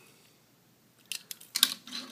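A Hot Wheels die-cast toy car being handled and set down on a tabletop: near silence, then a quick run of light clicks and taps starting about a second in, the sharpest just before the end.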